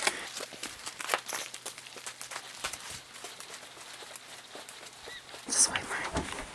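Footsteps walking over packed snow and then brick paving: an irregular run of light crunches and scuffs, with a louder burst a little before the end.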